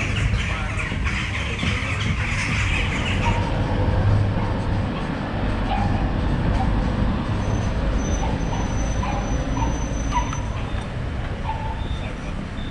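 Steady low rumble of wind and handling noise on a hand-held camera's microphone, carried along at a walk, with a faint hiss higher up for the first few seconds.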